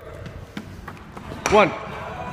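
Running footsteps of sneakers striking a hardwood gym floor as a sprinter sets off, a run of short irregular thuds and taps.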